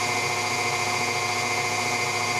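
KitchenAid stand mixer running at a constant speed as it beats cake batter: a steady, even motor hum made of several fixed tones.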